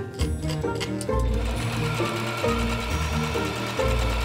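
Electric sewing machine stitching steadily, starting about a third of the way in and stopping right at the end, under background music.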